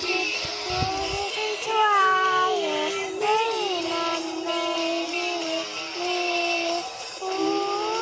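A song sung in a high voice over a musical backing, a melody of long held notes that glide up and down.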